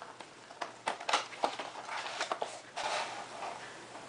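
Cardboard packaging being handled as a magnetic-closure box is opened: a scattering of light taps and clicks with short rustles.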